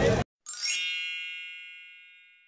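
A bright ringing chime, the kind of sound effect laid under a title card: one shimmering ding with many high pitches that fades away over about a second and a half. Just before it, a brief stretch of outdoor crowd noise cuts off abruptly.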